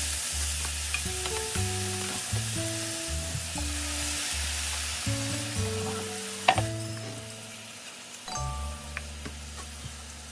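Eggplant and minced chicken frying in a pan with a steady sizzle, stirred with chopsticks. About six and a half seconds in there is one sharp knock of a utensil, and after it the sizzle is quieter.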